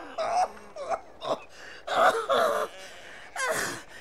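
An old man's voice groaning and gasping without words, with a sharp breathy burst like a cough or gasp about three and a half seconds in: sounds of a man in discomfort who says he is sick.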